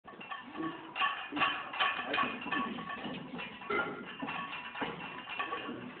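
Weight-room clatter: repeated metallic clinks and clanks of barbell plates, a couple a second, each with a short ring.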